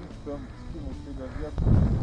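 Wind buffeting the camera microphone in a snowstorm: a low rumble that picks up sharply near the end. A faint voice can be heard under it in the first part.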